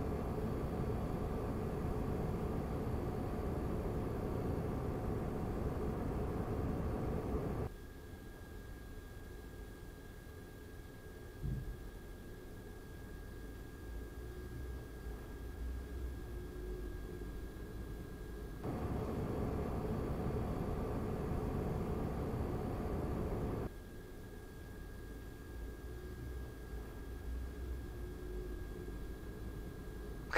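Cooling fans of a Razer Core X eGPU enclosure running at full GPU load, a steady rushing fan noise. It is louder with the stock 120 mm intake fan and drops noticeably about eight seconds in to the quieter sound with a Noctua NF-A12x25 fan fitted; the louder level returns for about five seconds around 19 s before dropping again. A faint steady high tone sits under the quieter stretches.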